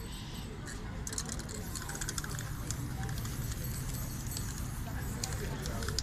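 Aerosol spray paint cans hissing in short bursts with light clicks and rattles while a spray-paint picture is worked, over a low murmur of street voices.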